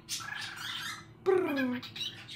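Cockatiel chattering softly for about a second, followed by a short, falling wordless voice sound.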